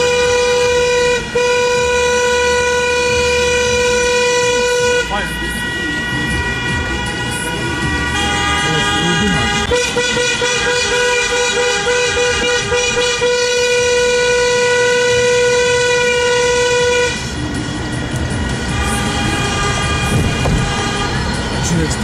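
Several car horns held in long continuous blasts, the celebratory honking of a wedding convoy. The loudest horn stops about five seconds in, sounds again from around ten seconds and stops near seventeen seconds, while other horns carry on more faintly.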